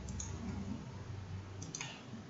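A few light clicks of a computer mouse, the sharpest one near the end, over a low background hum.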